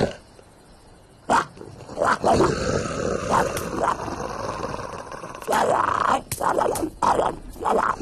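Cartoon characters making wordless animal-like grunts and growls. It is quiet at first, with a single click about a second in. A drawn-out vocal sound follows, then a run of louder short grunts in the last few seconds.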